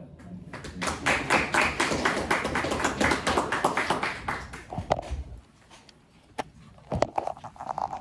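A small group clapping, many quick claps a second, starting about half a second in and dying away after about five seconds. A few knocks and rubbing follow near the end as a phone is handled and picked up.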